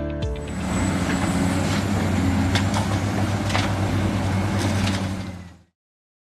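A large engine running steadily: a deep, even hum under a rough noise, with a few sharp ticks. It cuts off abruptly near the end.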